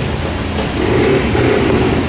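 A large vehicle engine running steadily close by, a low, pulsing rumble with street noise around it.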